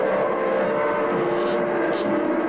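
Amplified trumpet holding long, steady notes, with a change of note near the end.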